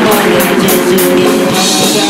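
Live rock band playing loud: a hollow-body electric guitar with drum kit, cymbals struck in an even beat about four times a second.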